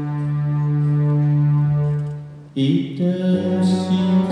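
Live acoustic band music: a long, steady low held note fades out about two and a half seconds in, then a new passage of changing notes begins.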